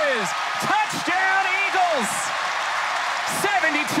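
Television play-by-play commentator's raised voice calling a long touchdown run, over the noise of a stadium crowd.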